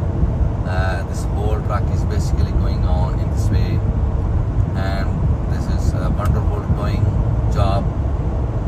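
Steady low rumble of road and engine noise from driving at highway speed alongside heavy trucks, with short snatches of an indistinct voice over it.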